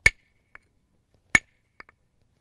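Deer-antler soft hammer striking the edge of a stone handaxe twice, about 1.3 seconds apart, each blow a sharp click with a brief ringing ping and a few faint ticks after it. This is soft-hammer percussion, knocking long, thin thinning flakes off the handaxe.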